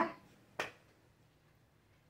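A single short, sharp click a little over half a second in, after the tail of a woman's speech.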